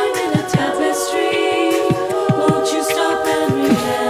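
Women's a cappella group singing held chords over vocal percussion: low, falling beatbox kicks a few times a second and short hissy hi-hat sounds.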